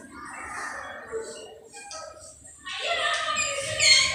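A rooster crowing, starting about two-thirds of the way in after a quiet stretch.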